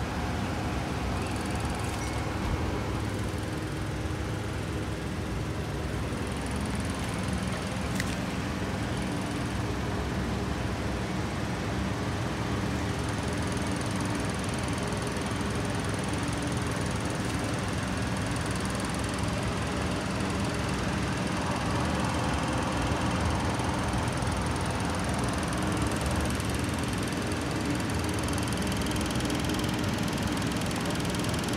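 Steady background rumble with a low hum throughout, and one sharp click about eight seconds in.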